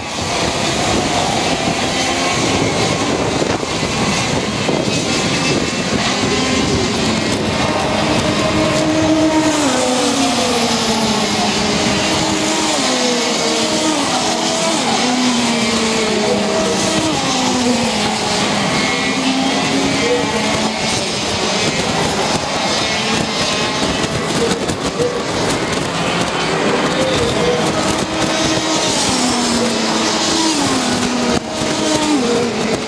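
Racing kart engines on the track, several at once, their pitch repeatedly falling and climbing again as the karts slow into and accelerate out of the corners.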